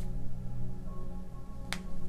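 Soft background music with sustained drone tones, and one sharp click about three quarters of the way through.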